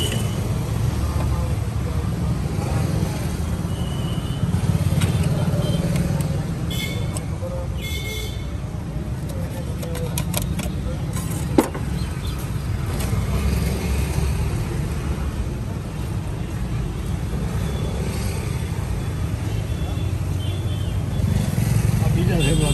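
Steady low rumble of road traffic passing, with a single sharp tap about halfway through.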